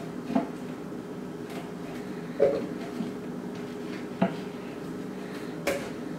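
About five short knocks and clatters of kitchen items being handled on a countertop and cutting board, over a steady low hum.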